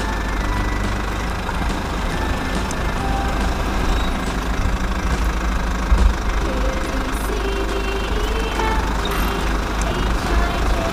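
Steady engine-like idling rumble, heavy in the low end, running unbroken under the toy-bulldozer play. There is a single sharp tap about six seconds in.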